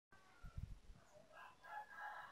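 Near silence, with a faint distant bird call in the second half.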